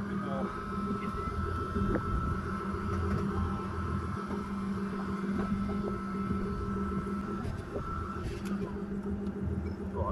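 Nissan Laurel C33's RB20DET straight-six idling steadily as the car creeps slowly, with a thin steady high whine running until nearly the end.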